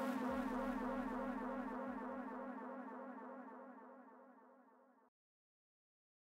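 Buzzing electronic drone with a rippling texture, fading out steadily and stopping about five seconds in, followed by silence.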